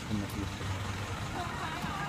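Outdoor background of distant voices over a low, steady rumble.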